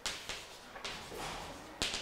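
Chalk writing on a blackboard: a run of short, scratchy strokes as words are written, the loudest stroke near the end.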